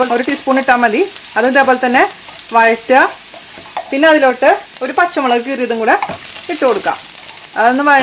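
Mustard seeds, dried red chillies, curry leaves and chopped ginger sizzling in hot coconut oil in a pan, stirred with a spatula. A woman's voice talks in short phrases over the sizzle throughout.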